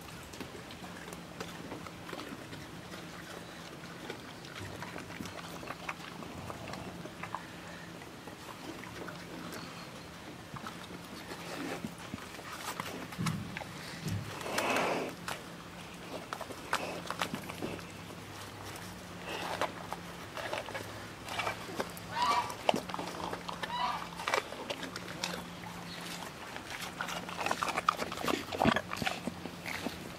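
Young brown bear eating at close range: chewing and sniffing at its food, with scattered clicks and short animal vocal noises that come louder and more often in the second half.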